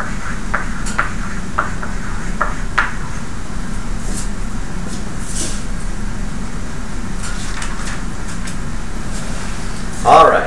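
Steady low hum of classroom room noise, with a few light clicks and taps in the first three seconds and faint scratchy sounds later on.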